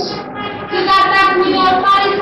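A girl's voice singing, coming in about half a second in with long held notes, on muffled old videotape sound.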